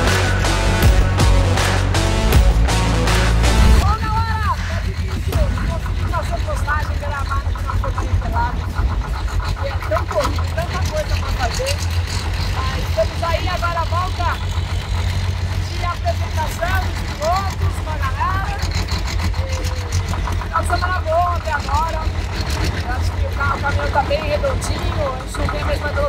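Background music for about the first four seconds, then a woman talking close to the microphone over a steady low rumble.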